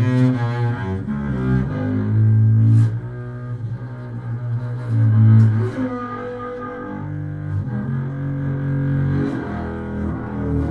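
Solo double bass played with the bow: a slow line of held low notes, each lasting a second or two before the pitch changes, with the strongest notes about two and a half and five seconds in.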